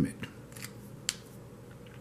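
Pen and marker being handled: a few light clicks and taps, the sharpest about a second in, over quiet room hiss.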